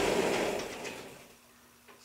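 A sliding whiteboard panel being pushed along its track: a rolling noise that dies away about a second in.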